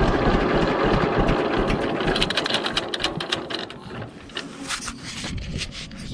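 1943 John Deere B two-cylinder tractor engine idling with a rhythmic clatter, then slowing into sparser, irregular firing knocks as it dies away after being shut off at the magneto.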